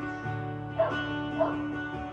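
Acoustic guitar playing ringing chords as a song intro, a new chord struck just after the start. Two short sharp sounds cut in over it, about a second in and again half a second later.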